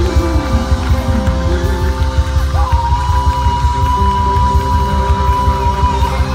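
Live rock band playing loudly: a note slides down in pitch in the first second or so, then a long held high note starts about two and a half seconds in, over a heavy, steady low end.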